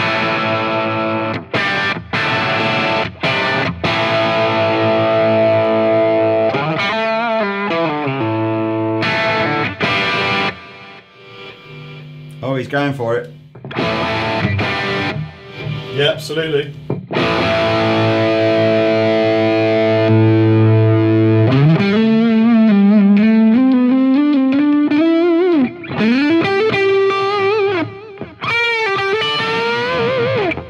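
Gibson Les Paul Standard electric guitar played through a distorted Marshall JCM800 amp. The first half is rhythm chords in stop-start strokes, with a short lull near the middle. After that come held notes and single-note lead lines with string bends and vibrato.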